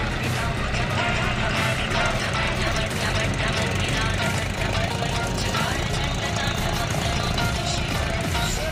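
Diesel tractor engine running steadily under load as a John Deere tractor bogged in a muddy paddy field is pulled out by rope, mixed with background music and voices.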